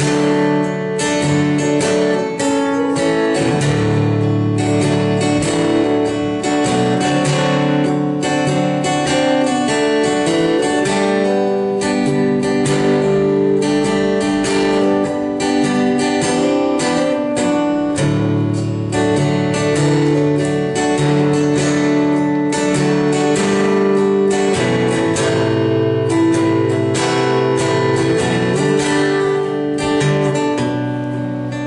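Acoustic guitar played alone, a steady rhythmic run of chords with many string attacks a second and no singing.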